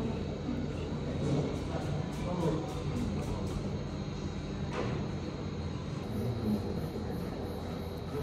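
Steady room tone with faint, indistinct voices and one sharp click about five seconds in.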